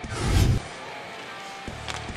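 A broadcast transition sting: a whoosh with a deep bass hit, lasting about half a second, then a much quieter steady background.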